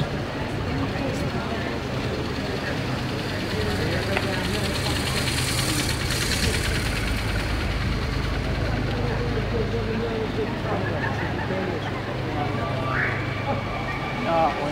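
Motorcade vehicles driving slowly past, engines running with a low steady hum; in the middle a hiss swells and fades as a vehicle passes close. Near the end a tone rises and then holds steady.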